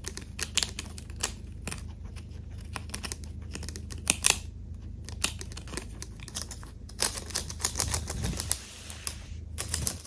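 A chinchilla chewing a crisp loquat leaf: rapid, irregular crunches and crackles that come in clusters, with a louder burst about four seconds in.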